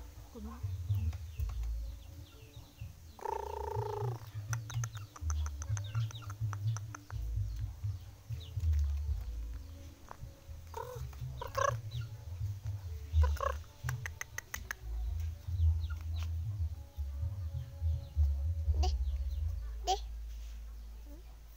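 Chickens in a yard: a few short, sharp clucks and calls, with one longer pitched call about three seconds in, over a steady low rumble on the microphone.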